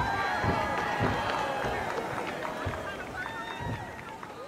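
Double dutch ropes and jumpers' feet beating on a stage, about two or three thumps a second, under the chatter of a crowd.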